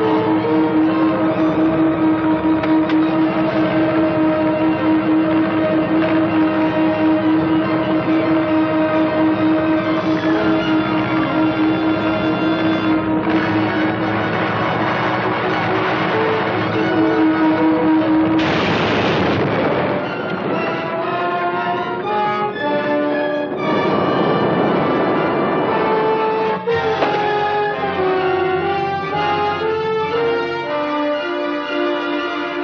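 Dramatic orchestral film score: a long held chord of strings and brass, giving way about two-thirds of the way in to a busier, agitated passage with two rushing swells a few seconds apart.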